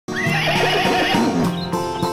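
A horse whinnies, a wavering neigh lasting about a second and a half, and then acoustic guitar music takes over.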